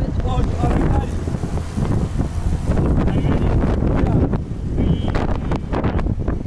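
Strong wind buffeting the microphone, a steady low rumble, with a few brief voice sounds.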